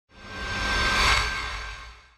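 Logo ident sound effect: a whoosh with a low rumble and a faint steady high tone, swelling to a peak about a second in and then fading away.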